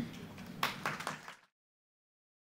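Audience starting to applaud, a few separate claps over a light haze, cut off suddenly about a second and a half in.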